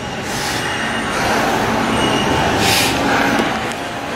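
Steady room noise in a gym with two short, sharp hissing breaths, about a third of a second in and near the three-second mark, from a man straining through dead-hang chin-ups.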